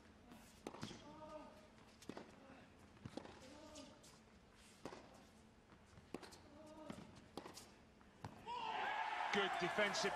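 Tennis rally: a ball struck by racquets about once a second, with a player's grunt on some of the shots. The rally ends about eight and a half seconds in, and loud crowd noise rises.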